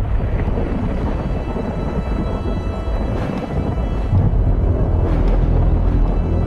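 Thunder rumbling over steady rain, with a sustained music chord held underneath. The rumble swells twice, once near the start and again in the second half.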